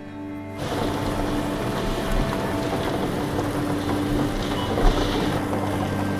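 A bingo ball blower machine running, its air jet churning the balls with a steady rushing and a fine clatter that starts about half a second in, over a low steady hum.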